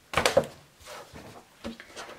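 A stiff sheet of fusible interfacing rustling as it is lifted and shaken, a short sharp burst about a quarter of a second in, followed by faint handling noise of fabric pieces on a cutting mat.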